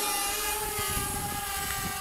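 DJI Spark mini quadcopter's propellers and motors giving a steady whining hum as the drone climbs straight up, growing slightly fainter as it rises.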